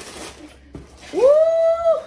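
A woman's voice exclaiming "woo" about a second in: it glides up quickly in pitch and is then held for nearly a second.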